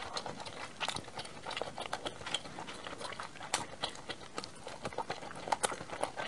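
Close-miked chewing of a mouthful of fried food: an irregular run of wet mouth clicks and smacks, with a few louder ones about three and a half and five and a half seconds in.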